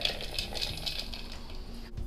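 Shelled walnuts poured from a stainless steel bowl into the plastic bowl of a food chopper: a dense rattle of many small pieces landing, thinning out toward the end.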